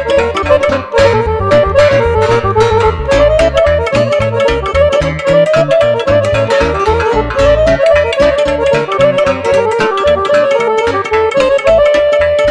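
Live Romanian lăutărească music from a small band of clarinet, cimbalom, accordion and keyboard, playing a brisk tune over a steady, pulsing beat.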